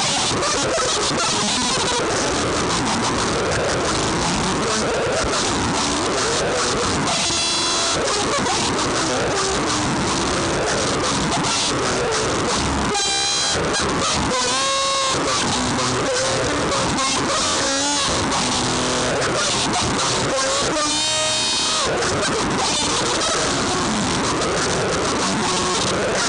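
Electric guitar played through heavy distortion and effects in a noise freakout: a dense, unbroken wall of loud fuzzy noise, with wavering high pitched tones breaking through a few times, about a third of the way in, around the middle and near the end.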